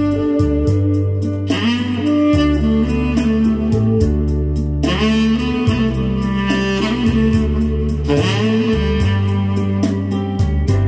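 Sky Wind tenor saxophone playing a slow melody over a slow-rock backing track of drums, bass and electric guitar, with a steady beat and held notes.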